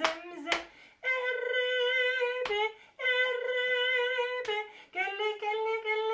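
A woman singing a children's action song solo with every vowel sung as E: short sung syllables, then two long held notes, with a few short sharp knocks between the phrases.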